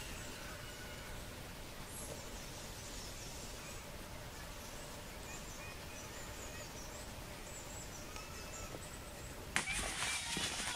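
Quiet outdoor ambience with scattered faint, short, high-pitched bird calls. About half a second before the end a sudden louder rush of noise comes in.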